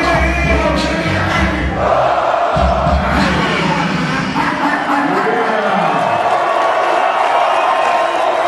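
Live hip-hop backing track with a heavy bass beat under a crowd singing and shouting along. The bass cuts out about five seconds in, leaving the crowd's voices.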